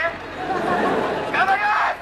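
Spectators' voices in a stadium crowd: chatter, with one raised voice calling out about one and a half seconds in.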